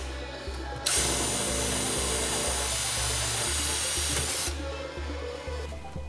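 Chicago Pneumatic CP8818 12 V cordless impact driver running steadily for about three and a half seconds from about a second in, drilling through sheet metal. Background music with a steady beat plays throughout.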